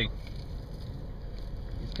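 Low steady rumble of a pickup truck's engine idling, heard from inside the cab with the window open.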